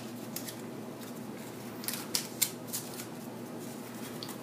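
Double-sided cardstock being handled and pressed into shape by hand. A few short, crisp paper crackles and clicks come near the start and again in a cluster about two seconds in, over a faint steady room hum.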